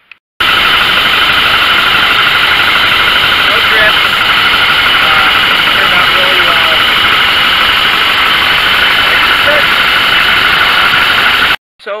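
Cat D3 dozer's diesel engine running steadily, loud and close to the microphone, during a test run of a freshly resealed hydraulic cylinder. The sound starts abruptly about half a second in and cuts off just as abruptly shortly before the end.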